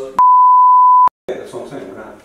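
One loud, steady, single-pitch bleep lasting just under a second, with all other sound cut out around it: an edited-in censor bleep covering a spoken word. Men's talk resumes right after.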